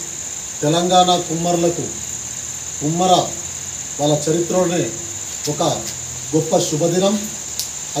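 A man's voice speaking in short phrases with pauses between them, over a steady high-pitched whine that runs throughout.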